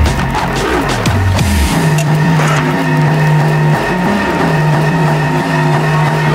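Neurofunk drum and bass in a DJ mix: a loud beat with deep bass hits for about the first two seconds, then the drums thin out under a sustained bass note and steady high tones.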